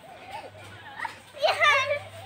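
Children playing: a child's high-pitched cry, loudest about one and a half seconds in, with fainter child voices before it.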